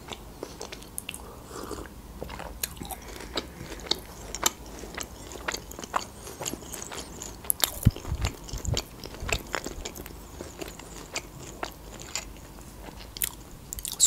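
Close-miked chewing with irregular wet mouth clicks and smacks.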